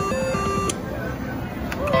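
Pinball slot machine's electronic reel-spin jingle, a stepping beeping tune that stops about two-thirds of a second in as the reels come to rest, with a few sharp clicks. Quieter casino background follows.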